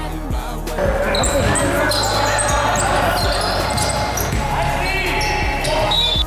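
Live basketball game sound in a gym: the ball bouncing on the hardwood floor and players' voices, over quieter background music.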